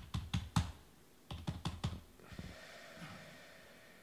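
Two short runs of sharp clicks, four or five in each, about a second apart, then a soft hiss that fades out.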